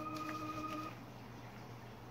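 Faint held notes of background music stop about a second in, leaving quiet room tone with a few faint soft ticks of origami paper being creased and handled.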